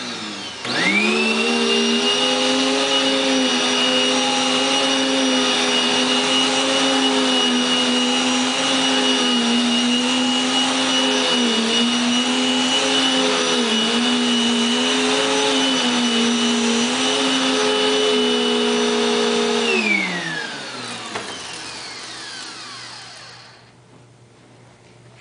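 Dirt Devil upright vacuum cleaner switched on under a second in, its motor spinning up and then running steadily with a slightly wavering pitch. It is switched off with some seconds left and winds down, its pitch falling.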